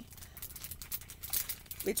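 Small items being handled, with light, irregular clicking and rattling.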